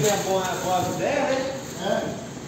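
A man's voice with a few untranscribed words, over light rustling of plastic sacking as a wrapped car spoiler is lifted and handled.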